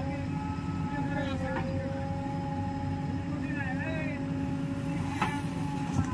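JCB 3DX backhoe loader's diesel engine running steadily with a held whine while the backhoe arm lifts a bucket of sand and swings it over a trailer. There is a sharp knock about five seconds in.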